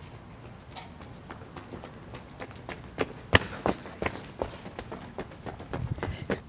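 Footsteps of a person running on hard ground, a quick irregular patter that starts about two and a half seconds in, with one sharp, loud step or knock a little after three seconds.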